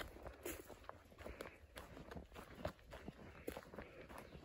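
Faint footsteps crunching on a gravel-and-dirt trail at a walking pace.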